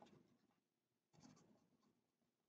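Near silence, with faint scratching of a felt-tip marker writing numbers on paper, heard briefly a little past the middle.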